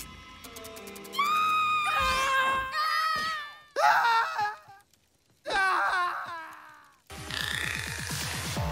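Cartoon characters wailing in fright: three long, high-pitched wavering cries, the first lasting about two seconds. A dramatic music sting comes in near the end.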